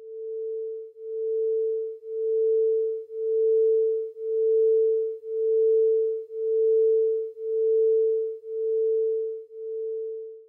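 Two pure sine tones of 444 Hz and 445 Hz sounding together and beating. The single steady pitch swells and fades about once a second, the beat rate set by the one-hertz difference between the two frequencies.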